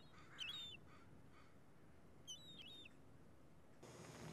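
Faint, short, high-pitched bird calls: one about half a second in and a couple more around two and a half seconds in, over quiet background.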